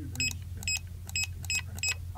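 Barcode scanner beeping five times in quick succession, a short high-pitched beep for each successful read of a barcode, about two a second.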